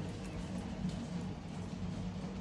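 Quiet room tone: a steady low hum with faint background noise.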